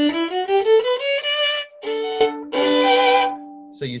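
Violin played into a laptop's built-in microphone: a quick rising scale, then two bowed chords at about two and three seconds in. The chords still push the input a little into clipping.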